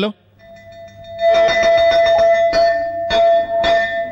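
A school bell ringing steadily for about three seconds over a clattering background, swelling in about a second in and stopping just before the end.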